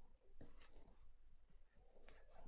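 Near silence, with faint rustling and a soft scrape, the clearest about half a second in, as a crochet hook draws 5 mm cord through the stitches.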